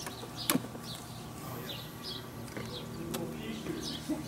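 Small birds chirping faintly, with a sharp click about half a second in and another near three seconds from handling the A/C manifold gauge set as its valve is opened.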